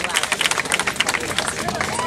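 Crowd of many people talking over one another at once, with no single voice standing out, and a dense crackle of short clicks or knocks running through it.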